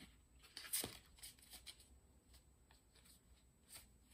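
Faint rustling and soft taps of a deck of oracle cards being handled, with a few scattered clicks, the sharpest one a little under a second in.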